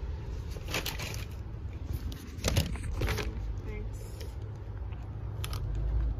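Steady low outdoor rumble with a few short clicks and crunches as a spoon digs into a food bowl and a big bite is taken.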